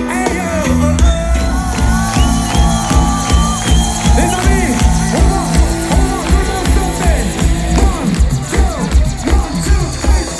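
A live reggae band playing loud amplified music: a singer's voice over a heavy, pulsing bass beat.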